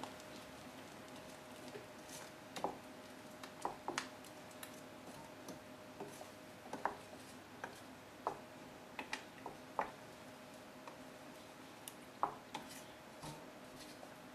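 Wooden spoon stirring thick peanut sauce in a stainless steel saucepan: faint, with irregular soft taps of the spoon against the pan, roughly one a second.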